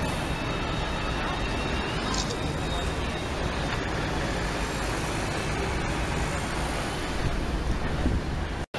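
City street traffic: road vehicles, including cars and buses, running past in a steady noise, with indistinct voices mixed in.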